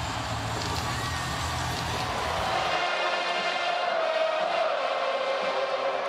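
A large college football stadium crowd cheering and chanting, with music mixed in. The sound changes abruptly about three seconds in, losing its low rumble.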